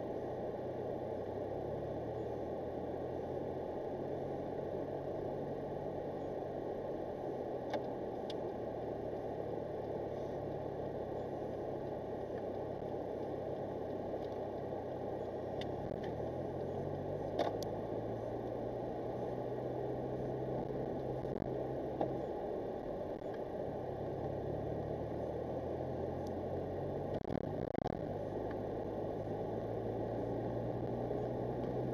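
A car's engine and road noise heard from inside the cabin while it drives, the engine note rising and falling as it speeds up and slows. A few light clicks break in now and then.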